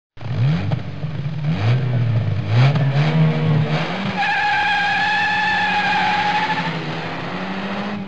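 Sound effect of a car engine revving up, rising in pitch several times in quick succession, then holding a steady note while a tyre squeals for about two and a half seconds from around four seconds in.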